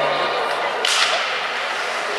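Ice hockey play in an arena: a steady hiss of rink noise with one sharp scraping swish about a second in, the sound of a skate or stick on the ice.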